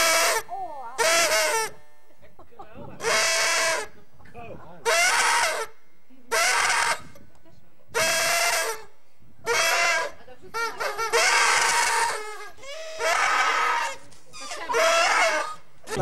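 About ten short, high-pitched vocal cries from one voice, each under a second long and spaced a second or two apart, with no words that can be made out.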